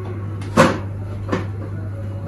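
Two knocks on a child's small table, the first louder, a little under a second apart, over a steady low hum.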